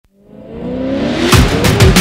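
Sony Airpeak S1 drone's motors whining, fading in and slowly rising in pitch, with two deep booming hits a little past halfway and near the end.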